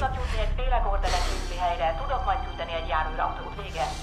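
Speech from a film soundtrack, voices talking over background music with a steady low rumble underneath.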